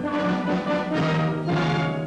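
Brass-led orchestral newsreel theme music: a series of loud held chords, changing about every half second.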